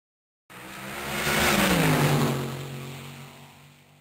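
A car speeding past: the engine sound swells in for about a second, its pitch drops as it goes by, then it fades away and cuts off abruptly at the end.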